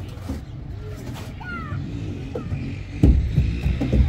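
Outdoor playground sounds: a steady low rumble, with children's voices calling faintly at a distance. About three seconds in, a few louder thumps come in, like feet on the play structure or bumps on the microphone.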